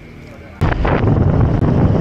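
Loud wind buffeting on the microphone of a camera riding on a moving motor scooter. It cuts in suddenly about half a second in, after a short, quieter stretch.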